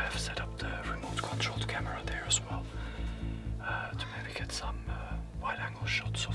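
A man whispering in short hushed phrases over background music with a steady low bass.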